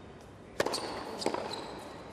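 Tennis ball impacts during a rally: two sharp pops about two-thirds of a second apart, each a ball striking a racket or bouncing on the hard court, over a quiet arena ambience.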